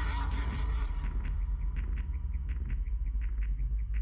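Film-trailer sound design: a deep steady drone with a faint held high tone. From about a second in, a run of short light ticks comes about four times a second, like a clock-like pulse in the score.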